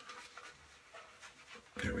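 Faint scratchy swishing of a Plisson shaving brush swirling shaving-cream lather over a shaved scalp.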